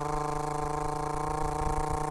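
Sound effect of a vehicle engine running at a steady, unchanging pitch over a low rumble. It starts and cuts off abruptly.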